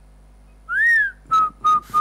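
Whistling: one note that glides up and back down, then a run of short, evenly spaced notes at one pitch, about four a second.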